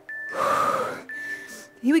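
A woman's hard, breathy exhale from exertion during a workout, lasting under a second, about half a second in.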